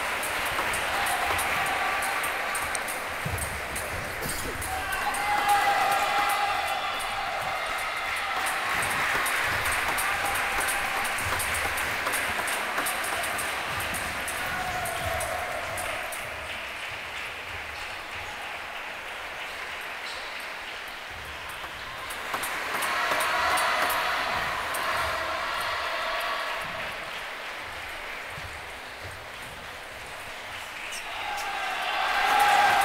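Table tennis hall din: a crowd of voices from team benches and nearby tables swells louder twice, about five seconds in and again past twenty seconds. Under it run the light, rapid clicks of table tennis balls from warm-up rallies.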